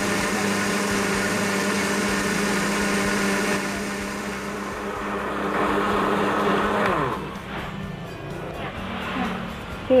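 Countertop electric blender running steadily, blending silken tofu and olive oil until the sauce thickens. About seven seconds in it is switched off and its motor winds down with a falling whine.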